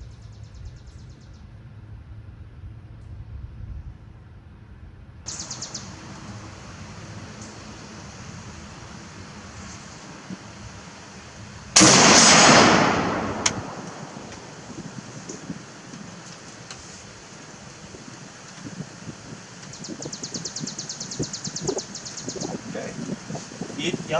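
A single shot from a short-barrelled Beretta ARX 100 5.56 mm rifle about halfway through: one loud, sharp report that rings and dies away over about a second.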